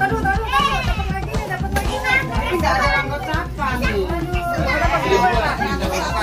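Several children talking and calling out at once, over background music.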